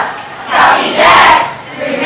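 A class of students speaking a line aloud together in unison, as in a choral listen-and-repeat drill, in two loud phrases about half a second and a second in.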